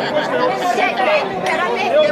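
Several adults shouting and arguing over one another in Italian, with a man's and a woman's raised voices overlapping in angry chatter.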